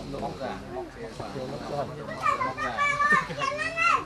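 Background voices: murmured chatter from onlookers, with a higher-pitched voice speaking over it in the second half.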